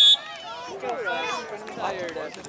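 A referee's whistle gives one short, shrill blast at the start, followed by spectators' and players' voices calling across the field.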